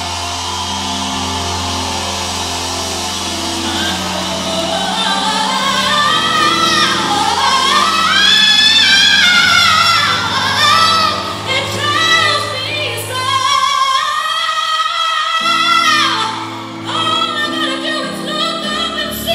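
Live jazz band music: a held chord over a bass line, then from about five seconds in a woman sings over the band in long, high notes that slide up and down.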